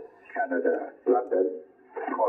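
A man's voice received on single-sideband, heard from a Yaesu FT-710 transceiver's speaker with its digital noise reduction set to level 15: thin, narrow-band speech in two short phrases with brief gaps between them.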